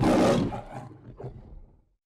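The MGM logo lion's roar: one loud roar followed by a couple of shorter, fainter grunts that die away near the end.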